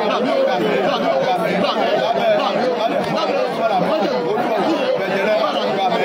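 People praying aloud at the same time, several voices overlapping without a pause.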